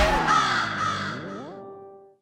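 A comic sound-effect sting: a sharp hit with a crashing wash that fades over about a second and a half. Under it a falling tone turns about three-quarters of the way through and rises into a short held chord.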